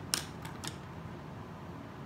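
Makeup tools being handled: three quick light clicks close together near the start, over a steady low room hiss.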